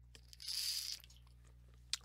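A short breath into a close headset microphone, lasting about half a second, over a faint steady low hum.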